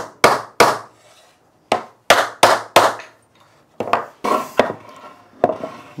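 Wooden mallet knocking a freshly glued stool rail fully home into its joints: about ten sharp wooden knocks, in quick runs of three and four with short pauses between.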